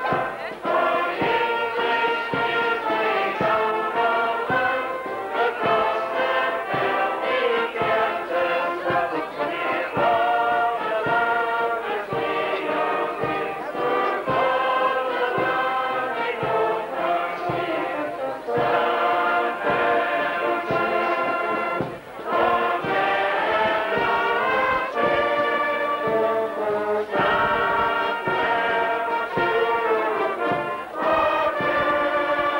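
A large crowd singing a Border song together, accompanied by a brass band.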